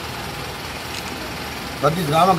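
Steady outdoor street noise with a vehicle engine idling; a man's voice comes back near the end.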